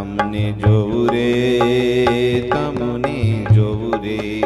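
Devotional kirtan music: sustained melodic notes held over tabla strokes, with deep low drum strokes about half a second in and again near the end.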